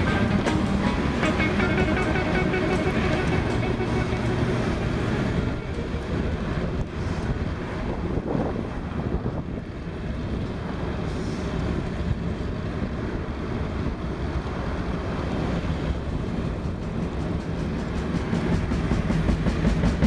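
Steady rushing noise of a moving bicycle ride, wind and road rumble on the camera's microphone, with music playing underneath; it eases somewhat in the middle.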